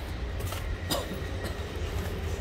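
A cordless power tool set down on cardboard over a hard floor, giving a short knock about a second in, over a steady low rumble.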